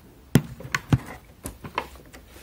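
Handling noise: a handful of irregular knocks and clicks as a phone camera is fumbled and set face-down on a wooden surface. The first knock is the loudest.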